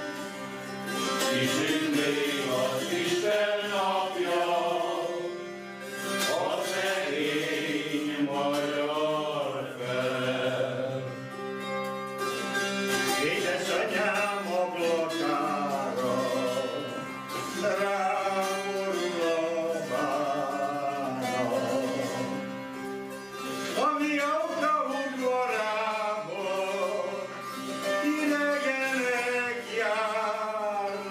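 Men singing a slow Hungarian folk song in phrases, with short breaths between them, accompanied by a citera (Hungarian zither) whose drone strings sound steady low tones beneath the melody.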